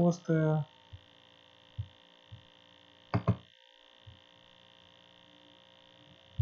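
Steady electrical hum and hiss from a computer recording setup, with two quick, sharp clicks in a row about three seconds in.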